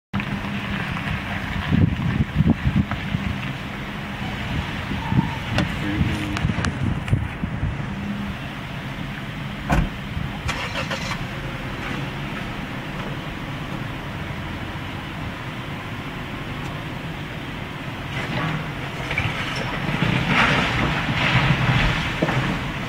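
A hydraulic excavator's diesel engine running steadily while it tears into an old wood-frame house. Knocks and cracks of breaking timber come now and then, and near the end a louder crash of collapsing wall and debris.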